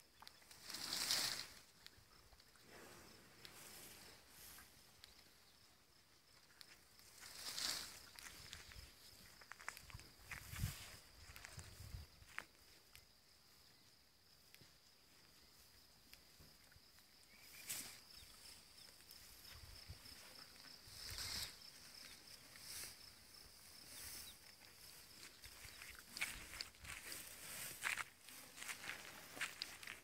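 Faint rustling and crackling of cut leafy branches and dry grass as an elephant calf forages through them with its trunk and feet, in scattered brief bursts that cluster near the end.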